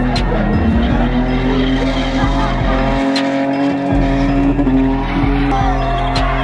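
Music with a heavy bass line over a car spinning: the engine held at high revs and the tyres squealing as it circles in its own smoke. The bass drops out for about a second just after the midpoint.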